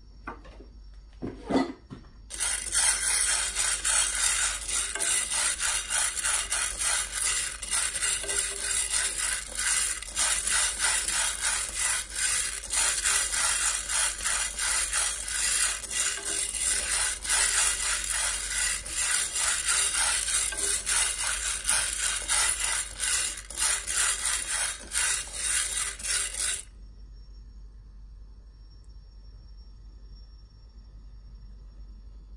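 Dry mung beans being dry-roasted and stirred with wooden chopsticks in a nonstick pan: a dense, continuous rattle of beans shifting against the pan. It starts a couple of seconds in after a few clicks and stops abruptly near the end.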